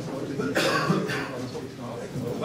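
A cough about half a second in, over the indistinct murmur of a seated audience chatting in a hall.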